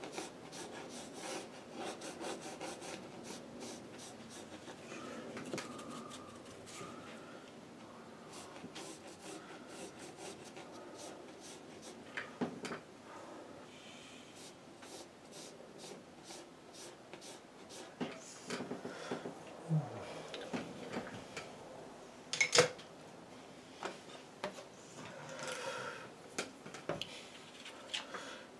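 A one-inch flat brush scrubbing over hot-pressed watercolour paper in short, repeated rubbing strokes, lifting wet paint back out of the painting. Faint taps and knocks come between the strokes, with one sharp click about two-thirds of the way through.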